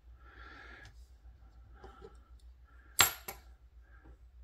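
Two sharp metallic clicks about three seconds in, a third of a second apart, from a partly disassembled titanium folding knife being handled as its blade is swung open, after a second of faint handling sounds.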